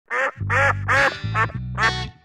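A series of five quick duck quacks, evenly spaced, over theme music with a bass guitar holding low notes.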